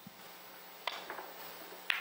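Three-cushion billiards shot struck hard: the cue tip clicks sharply on the cue ball about a second in, a few faint ticks follow, and a second sharp click of balls meeting comes near the end.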